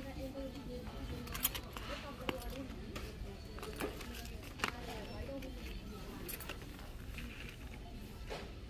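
Indistinct background voices with a few sharp clicks and crinkles as a clear plastic zippered pencil case is lifted out of a wire shelf basket and handled.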